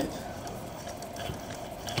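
Faint clicks and light handling noise from a hand turning an aluminium flywheel on a position-controlled electric-bicycle hub motor, over a steady faint hum.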